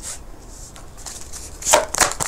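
A tarot deck being shuffled by hand. There are a few soft card clicks at first, then a quick run of sharp card slaps starts near the end.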